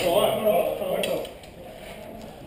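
An indistinct male voice calling out for about the first second, then quieter background. A single faint sharp click just after a second in.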